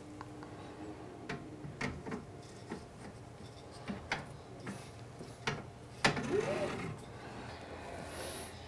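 Faint, scattered clicks and light knocks of a Flashforge Creator Pro 3D printer's extruder carriage being fitted back onto its rails, with a slightly louder knock about six seconds in.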